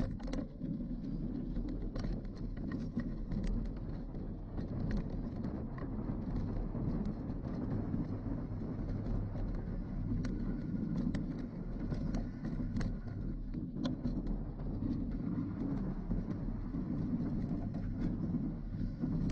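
Mountain bike rolling over a rough dirt and gravel track, heard through the handlebars: a steady low rumble of tyres and frame vibration, peppered with frequent small clicks and rattles.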